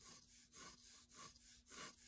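Pencil sketching light, curved strokes on paper: a faint, quick scratching repeated about three times a second. A faint steady hum runs underneath.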